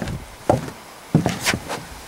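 Several short, irregular knocks on wood, about six in two seconds.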